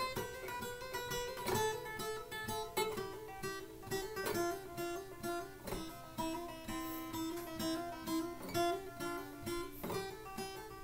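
Acoustic guitar playing a left-hand legato exercise: each picked note is followed by a quick run of hammer-ons and pull-offs between the notes of a third, repeated three times before moving on, so the notes alternate rapidly in a steady run.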